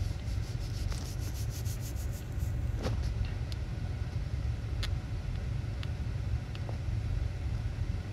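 Low steady rumble of a car's running engine heard from inside the cabin, with a few faint clicks scattered through it.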